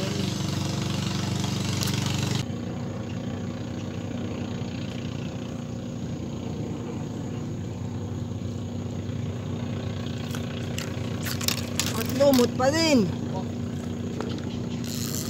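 An engine running steadily, a low hum that holds one pitch and drops in level a little over two seconds in. Near the end, a voice calls out twice in short rising-and-falling cries.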